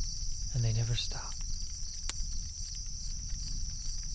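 Outdoor ambience of a steady, high insect chorus over a low rumble, with a few scattered clicks. About half a second in comes a brief low voice-like call lasting under a second.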